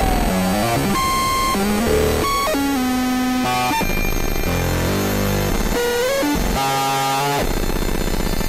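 Dense experimental electronic music: many synthesizer tones clash at once, each holding a pitch and then jumping to a new one every second or so, over a noisy wash.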